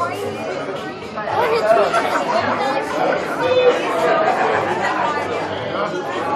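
Overlapping chatter of a group of people talking at once.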